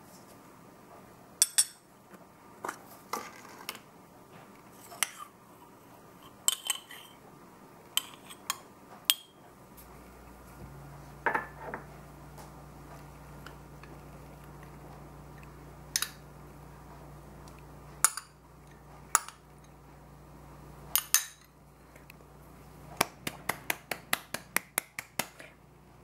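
A metal spoon clinking and scraping against small glass dessert cups as thick yogurt is spooned in, with sharp single clinks spread through and a quick run of light taps near the end.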